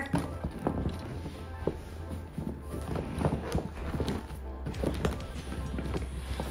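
Background music under the irregular rustling and soft knocks of a deflated inflatable dog kennel being folded over and pressed flat by hand.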